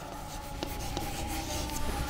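A word being written in chalk on a blackboard: scratching strokes with a few light ticks as the chalk meets the board.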